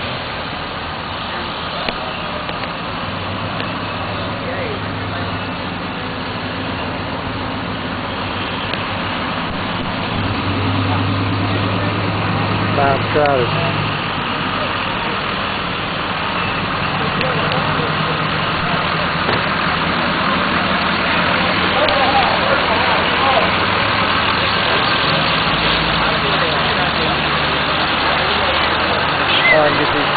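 Motor vehicle engines idling in backed-up traffic, their low steady hum coming and going as vehicles sit and move. Voices can be heard now and then.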